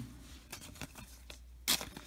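Baseball cards being handled by hand: faint sliding and rubbing of card stock against card stock, with one short, crisp rustle near the end.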